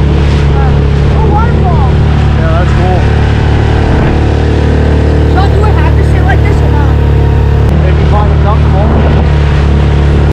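Outboard motor driving a small inflatable boat at speed, running steadily at a constant pitch.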